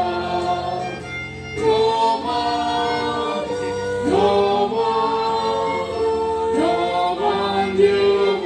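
A choir singing a slow hymn in long held notes, a new phrase beginning about every two and a half seconds.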